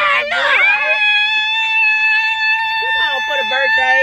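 A woman's voice holding one long, high note, steady in pitch, for about four seconds. A second voice talks under it near the end.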